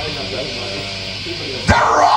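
Live black metal band on a raw bootleg tape recording: a quieter stretch with shouted vocal cries, then a sharp hit about one and a half seconds in as the full band comes back in loud.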